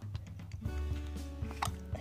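Background music with sustained low bass notes.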